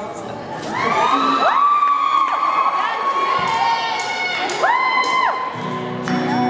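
Audience cheering, with several long high-pitched whoops and screams that rise and fall in pitch. The band's guitars start playing just before the end.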